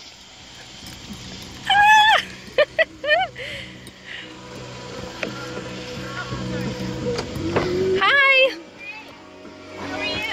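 A car's engine idling with music playing on its stereo. Over it come short, high-pitched voiced exclamations about two seconds in and again near the eight-second mark, with a couple of sharp clicks between them.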